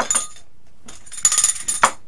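Small brass hand bell rung with rapid shakes in two bursts, the second starting about a second in.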